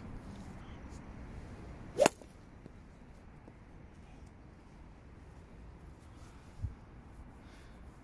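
A golf club striking a ball into a practice net: one sharp, loud crack about two seconds in, over a steady low outdoor background.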